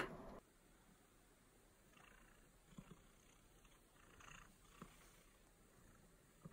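Near silence with a few faint, soft sounds of a tabby cat being stroked on a fleece blanket, and the cat quietly purring.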